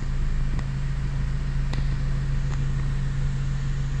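Subaru car's engine running while the car reverses slowly, heard from inside the cabin: a steady low hum with a few faint clicks.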